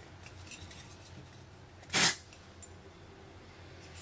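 A few faint clicks of a plastic deodorant bottle and cap being handled, then one short, loud sniff about halfway through as the deodorant's scent is smelled.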